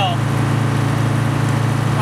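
A boat's engine running steadily, a loud low drone with a fine even pulse.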